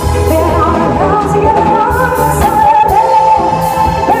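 Live band playing loud: a woman sings lead with long held notes over bass guitar and a drum kit with cymbal hits.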